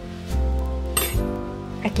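A metal spoon clinks once against a glass measuring cup about a second in, over steady background music.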